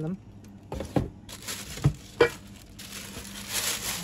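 Handling of a cookware pot's glass lid and its plastic wrapping: a few sharp knocks about one and two seconds in, and plastic rustling near the end, over a steady low hum.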